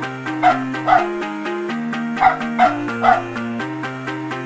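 Outro music with a stepping melody over sustained bass notes, with five short dog barks laid over it: two in the first second, then three in quick succession in the second half.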